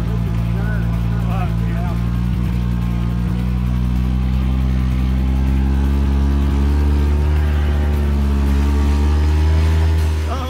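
Engine of a vehicle towing a snowboarder, running steadily under load and rising a little in pitch and level in the second half as it speeds up.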